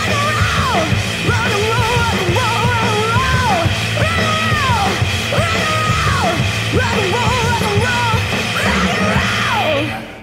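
Punk-rock song with a yelled lead vocal whose phrases swoop down in pitch over a driving band; the music starts fading out at the very end.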